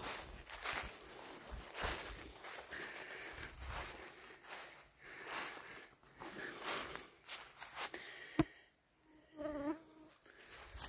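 Flying insects, mosquitoes and flies, buzzing around the walker, over his footsteps on a forest trail. One buzz comes close and wavers in pitch near the end, just after a sharp snap.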